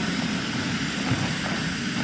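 Steady, even background hiss of room noise with no distinct event.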